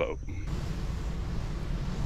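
The last of a spoken word, then from about half a second in a steady low rumble with an even hiss over it, outdoor background noise with no distinct event.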